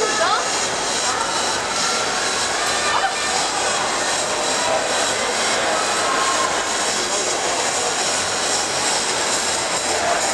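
Steady crowd noise in a large, echoing indoor track arena: many spectators' voices blending into a continuous roar, with a few voices standing out faintly now and then.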